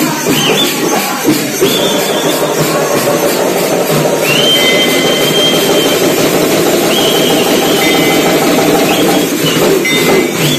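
Hand-held frame drums beaten by a folk troupe in a fast, dense, continuous roll. Over it a high, piercing tone slides up and is held for a second or two, several times.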